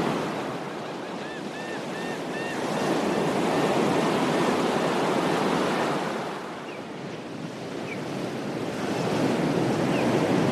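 Small ocean waves breaking and washing up a beach, the surf swelling and ebbing twice. A bird gives a quick run of four or five arched chirps in the first few seconds, and a couple of faint chirps come later.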